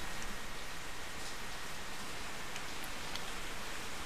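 Steady hiss of the recording's background noise, with no other distinct sound.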